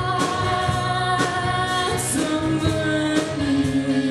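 Rock band playing live: a woman singing long held notes over drums, cymbals and electric guitars, with the sung note dropping lower about halfway through.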